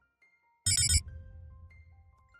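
A title-sequence sound effect: a short, fast electronic ringing trill, about a third of a second long, then a few soft sustained chime notes, one after another at different pitches, fading out.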